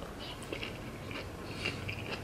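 A person chewing a piece of jalapeño pepper: faint, irregular wet clicks and crunches of the mouth.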